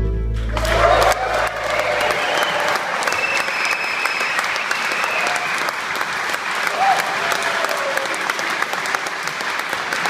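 Audience applauding and cheering as a bluegrass band's song ends, the final chord and a low upright bass note ringing out under the clapping for the first two seconds.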